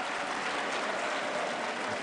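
Audience applause: many hands clapping in a steady, even patter.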